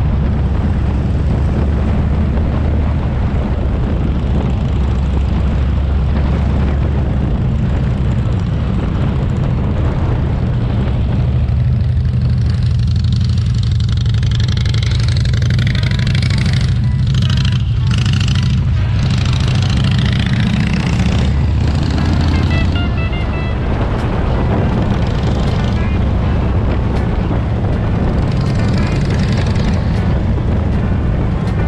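Steady low rumble of a motorcycle ride, with wind noise on the microphone.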